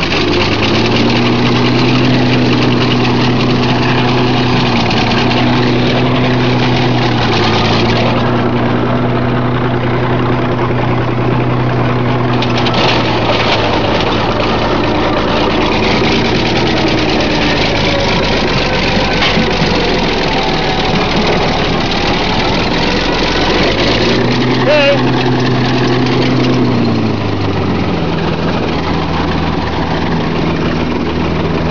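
International crawler dozer's engine working under load while pushing and crushing scrap cars. Its note rises about half a second in and holds, falls away about halfway through, then rises again for a few seconds near the end.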